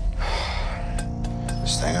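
A man's breathy exhale lasting about half a second, over a steady low drone and soft music, with a few faint clicks after it; a man's voice starts near the end.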